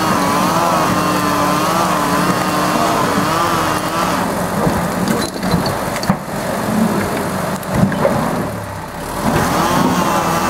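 Diesel engine of a crawler logging skidder pulling a load of birch logs, its pitch wavering up and down. From about four seconds in the engine sound gives way to clattering with several sharp knocks from the tracks and the dragged logs, and the engine comes back up near the end.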